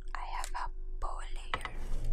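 A woman whispering close to the microphone, in two short phrases, followed by a single sharp click about a second and a half in.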